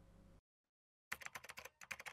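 Keyboard typing sound effect: a quick run of about ten sharp key clicks, starting about a second in after a moment of silence.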